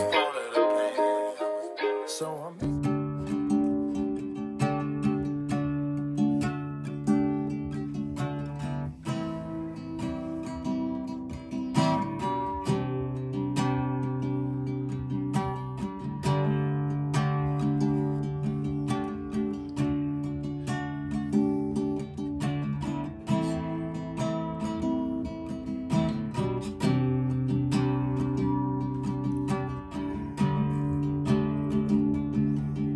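An acoustic guitar strumming a repeating chord progression in a steady rhythm, starting about two and a half seconds in after the tail of a recorded song fades.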